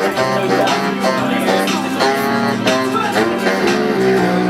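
Live music with a saxophone playing held notes.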